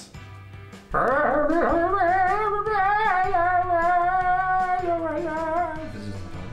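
Background music with a voice holding one long sung note with vibrato, starting about a second in and lasting about five seconds.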